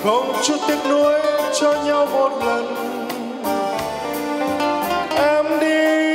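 Male singer singing live into a microphone over a keyboard accompaniment. His voice slides up into a note at the start and again about five seconds in, then holds it steadily.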